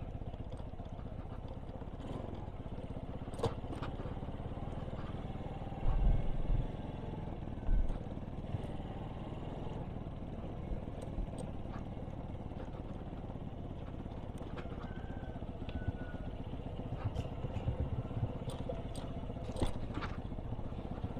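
Motorcycle engine running steadily on a rough dirt trail, heard muffled through a microphone clipped inside the rider's helmet. Scattered clicks and rattles from the bike going over bumps, with two louder low thumps about six and eight seconds in.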